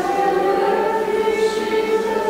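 Choir singing a slow liturgical hymn in long held notes.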